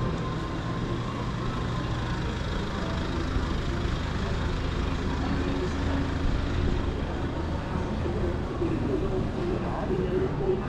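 Shopping-street ambience: a steady low vehicle hum under a general city bustle, with the voices of passersby, more of them near the end.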